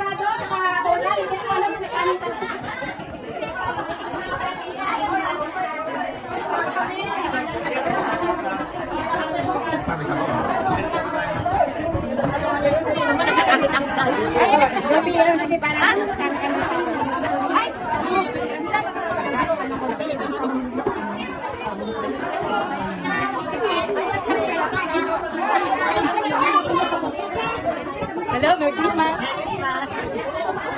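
Chatter of many people talking at once in a crowded room, a steady babble of overlapping voices with no single voice standing out.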